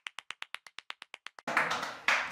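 A quick, even run of about a dozen hand claps, about eight a second, on a silent background, ending about a second and a half in.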